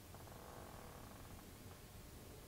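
Faint sound of acrylic paint being squeezed from a plastic squeeze bottle onto canvas, lasting about a second and a half, over near-silent room tone.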